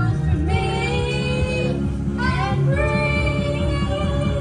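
Karaoke song playing with a voice singing the melody over the backing track.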